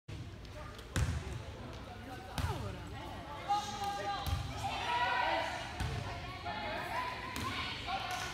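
Volleyball rally in a gymnasium: about six sharp smacks of the ball being served, passed and hit, spread over the few seconds, with players and spectators shouting and calling in the middle of the rally.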